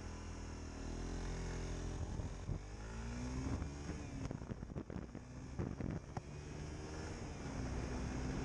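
Motorcycle engine running under the rider as the bike gets under way, its pitch climbing about three seconds in and shifting again later as the revs change. A few sharp knocks come through in the middle.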